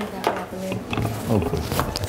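Indistinct voices talking away from the microphone, with a couple of light knocks.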